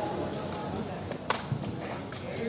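A sepak takraw ball being kicked: one sharp smack a little past a second in, with a softer knock just after, over low background chatter.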